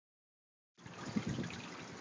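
Water trickling and splashing steadily into an aquaponics fish tank from the outflow of a homemade swirl filter, starting about three-quarters of a second in. A short bump sounds a little after a second.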